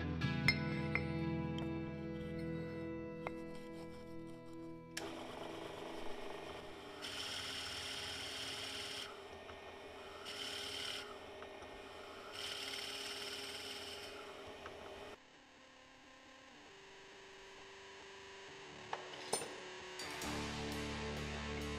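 Background music for the first few seconds, then a bench drill press cutting into a wooden block: a rough, rasping cutting noise that swells in three spells of a second or two each. It drops to a quieter stretch with a couple of sharp clicks near the end.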